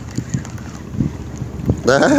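Wind buffeting the microphone: an uneven low rumble with soft thumps.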